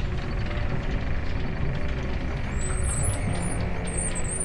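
Large corrugated-metal sliding hangar door rumbling and rattling as it rolls open, over background music.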